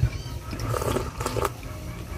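Eating at the table: broth slurped from a small bowl while chopsticks sweep food from it into the mouth, with a few light clicks of the chopsticks.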